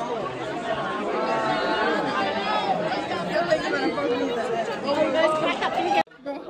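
A crowd of students chattering, many voices talking over one another at once with no single voice standing out.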